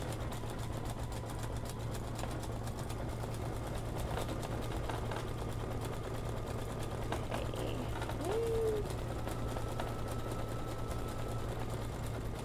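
Embroidery machine stitching steadily: a fast, even needle rhythm over a constant low motor hum.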